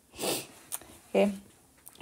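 A person's short sniff, a quick breath drawn in through the nose, lasting about half a second.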